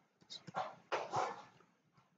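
A dog barking twice, two short barks about half a second apart, over keys being typed on a computer keyboard.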